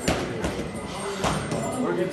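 Three sharp slaps of gloved punches landing on boxing pads, with background voices in a gym.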